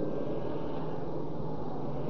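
Steady low hum and hiss of the background noise in an old recording, with no other event.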